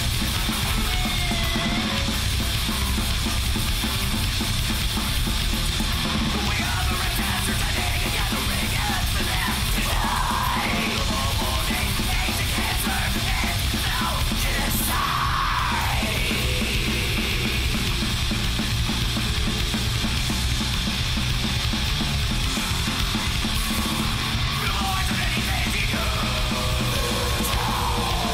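Hardcore crust punk recording: a loud, dense full band playing at an unbroken level, with shouted vocals coming in around the middle.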